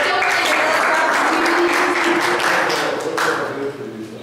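A room of people applauding, with voices talking over the clapping.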